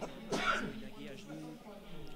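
A man clearing his throat once, short and sharp about half a second in, over faint voices in the background.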